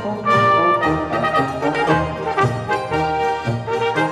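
Instrumental Alpine folk music led by brass, with a melody held over a recurring bass line.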